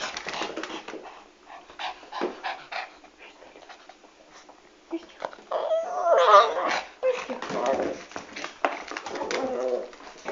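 Yorkshire terrier puppy whining at close range, loudest about six seconds in and again near the end, among rustling and knocks from handling close to the microphone.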